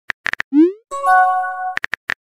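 Texting-app sound effects: quick keyboard tap clicks, then a short rising swoosh and a held electronic chime of several steady tones lasting under a second as the text message is sent, then more tap clicks near the end.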